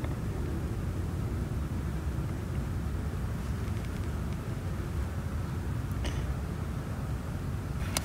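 Steady low background rumble, with a faint tick about six seconds in.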